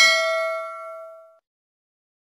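Notification-bell 'ding' sound effect of a subscribe-button animation: a single bright chime ringing out and fading away within about a second and a half.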